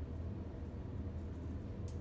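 A thin glass capillary tube, drawn from a Pasteur pipette, snapped by hand: one faint sharp click near the end, over a steady low hum in the room.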